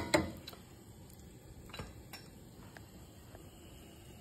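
Quiet kitchen with a few faint, scattered clicks and taps of a utensil against a glass bowl.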